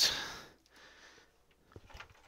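A person's short, breathy exhale close to the microphone, fading within half a second. It is followed by quiet room tone with a few faint clicks near the end.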